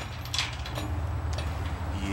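A few light clinks of a steel trailer safety chain being handled at the coupler, over a low steady background rumble.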